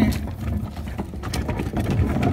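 A wheeled plastic trash can being moved over gravel: irregular rattling and crunching clicks over a steady low rumble of handling noise on the phone's microphone.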